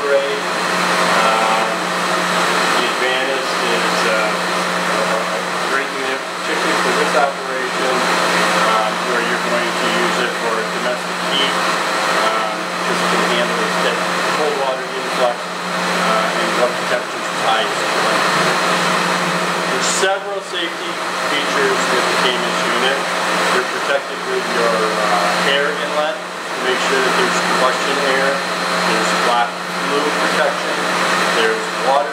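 A man talking over a steady mechanical hum from boiler-room equipment.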